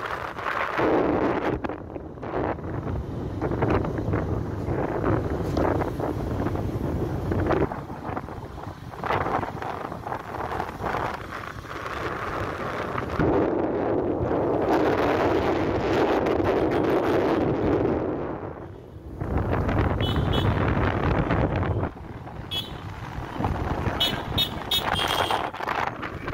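Motorcycle ride through town traffic: wind rushing over the microphone over the engine and road noise, with several short vehicle-horn toots in the last few seconds.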